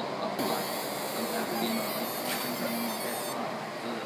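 Pen laser engraving machine running: a high-pitched hiss and whine that starts abruptly just after the start and cuts off about three seconds later.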